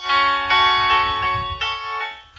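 Background music of bell-like chimes: several notes struck in turn, roughly half a second apart, each ringing on and overlapping the next.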